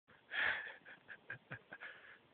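Breathy sounds from a person close to the microphone: one loud breath, then a quick run of short puffs about five a second.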